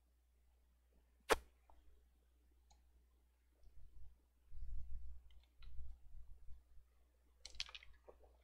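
A single sharp click about a second in, then a few seconds of low, muffled thumps and handling noise from drinking water close to the microphone, ending in a short breathy burst.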